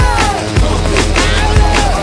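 Loud music with a heavy drum beat and a melody line that glides up and down in pitch.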